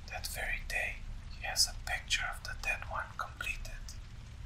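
Whispered speech: a voice whispering a story aloud, over a steady low background rumble.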